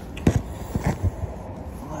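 Knocks and fabric rustling as a jacket is taken off and the phone recording it is jostled. The loudest knocks come about a quarter second in, with a few more around a second in.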